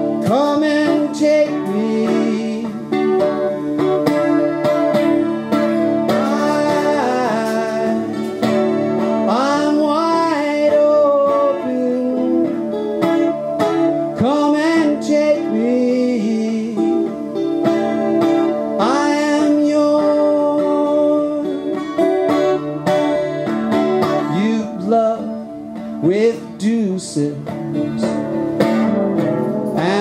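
Steel-string acoustic guitar strummed through a song, with a man's singing voice coming in at intervals.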